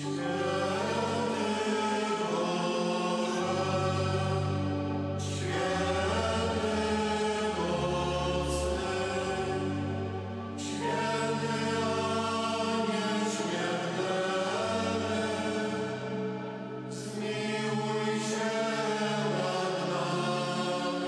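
Choir singing a slow hymn over long held low notes, the phrases starting anew about five, eleven and seventeen seconds in.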